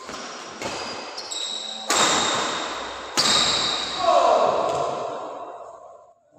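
Badminton rally in a sports hall: racket strikes on the shuttlecock, the two loudest about two and three seconds in, each ringing out in the hall. A falling shout comes about four seconds in.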